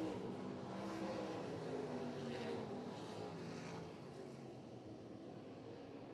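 A pack of limited late model dirt-track race cars running at speed, several V8 engines heard at once with pitches rising and falling as they go through the turns. Louder for the first few seconds, then fading as the field moves away.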